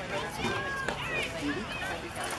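Several spectators talking at once, their voices overlapping into indistinct chatter with no clear words.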